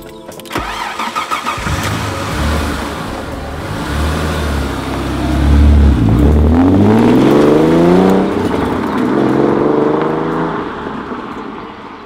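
Alfa Romeo Spider's Busso V6 engine pulling away and accelerating, its pitch rising, dropping once about eight seconds in as it shifts gear, then rising again before fading as the car drives off.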